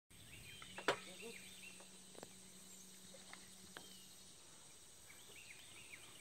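Faint outdoor ambience of small birds chirping repeatedly, with a steady high-pitched whine under it. A low steady hum stops about two-thirds of the way through, and there is a sharp click about a second in.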